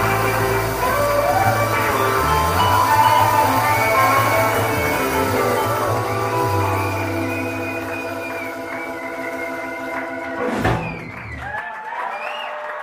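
Live blues band of electric guitar, keyboards, bass and drums holding out a long closing chord with lead lines over it. A final hit comes about ten and a half seconds in, and the crowd starts to cheer near the end.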